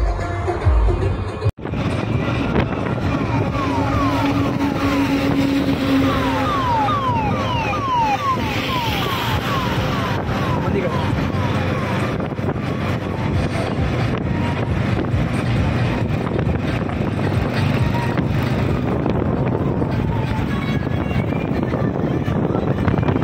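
Steady vehicle and road noise of driving along a highway at speed, behind a tractor. Partway through comes a run of quick, repeated falling chirps, roughly two a second, for several seconds. The sound cuts out briefly about a second and a half in.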